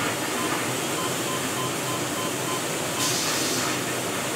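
Short, evenly spaced electronic beeps, about three a second, from the control panel of a LAVNCT industrial washer as its time buttons are pressed, over the steady hissing noise of laundry-room machinery.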